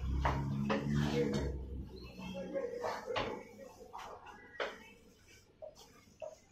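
Wooden spatula stirring eggs and diced onions in a non-stick wok, scraping the pan with a few sharp taps against it in the second half.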